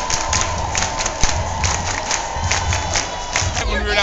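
A large football crowd cheering and shouting, many voices blended into one dense noise.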